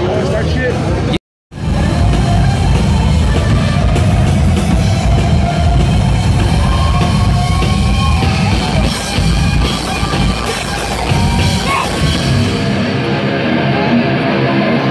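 Crowd chatter, cut off abruptly about a second in. Then a live heavy metal band plays loud, with distorted electric guitar over a drum kit.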